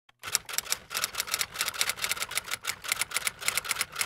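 A rapid, uneven run of sharp clicks, several a second, like fast typing.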